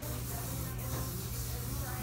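Steady hiss over a low hum: coffee-shop background noise.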